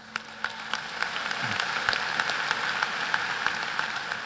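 Audience applauding: scattered claps at first, building to full applause within about a second and holding steady.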